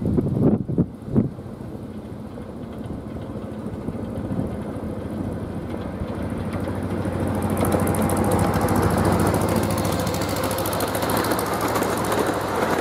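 Miniature railroad train approaching and passing: its locomotive's engine hum grows steadily louder, peaking about two-thirds of the way through, joined by the rattle of the cars rolling on the rails. Wind buffets the microphone near the start.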